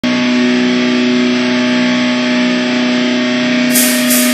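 Loud sustained drone of distorted electric guitar holding one steady pitch, leading into a heavy metal song played live.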